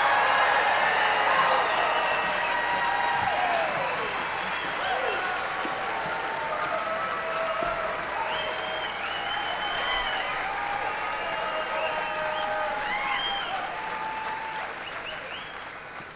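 An auditorium audience applauding, with scattered shouts and whistles over the clapping. The applause fades away over the last few seconds.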